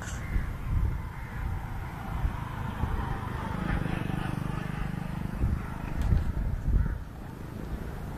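Outdoor ambience with wind buffeting the microphone in an irregular low rumble, and scattered bird calls above it.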